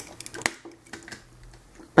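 Light clicks and taps of a Transformers Masterpiece Optimus Prime figure's parts being handled, a few sharp clicks in the first second and then quieter.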